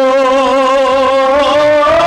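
Kashmiri devotional song: one long held note with a wavering vibrato over a steady low drone, stepping up slightly in pitch near the end.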